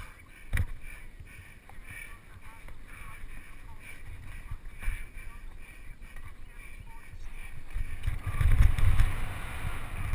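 Mountain bike ridden fast down a dirt trail, heard from a camera on the bike or rider: tyres rolling over dirt, the bike rattling and wind rumbling on the microphone. A sharp knock comes about half a second in, and the rumble grows louder around eight to nine seconds as the speed picks up.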